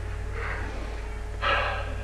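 A deep breath: a soft breath drawn in, then a louder breath out about a second and a half in.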